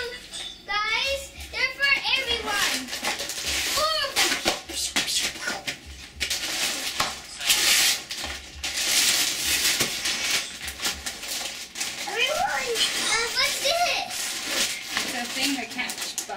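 Wrapping paper being torn and crinkled off a present, a crackling, rustling stretch in the middle, with children's voices before and after it.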